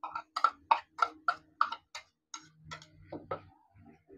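Metal spoon knocking against the rim of a small ceramic bowl to tip chopped onion out: a quick run of sharp clinks, about three a second, thinning out and softening in the second half.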